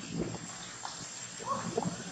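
Macaques giving a few brief, faint calls, one arching up and down in pitch about one and a half seconds in.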